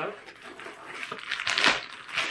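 Crinkling and rustling of a clear plastic zip-top bag being pulled out of a fabric backpack, loudest about one and a half seconds in.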